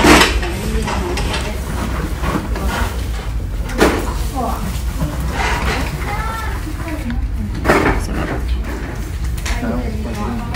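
Restaurant dining-room sound: a steady low hum with voices talking in the background and two sharp clinks of tableware, about four and eight seconds in.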